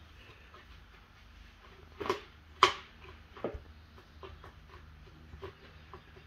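Clear plastic bucket knocking and scraping on a wooden floor as a kitten wriggles and plays inside it. A few sharp knocks come in the middle, the loudest about two and a half seconds in, followed by lighter taps.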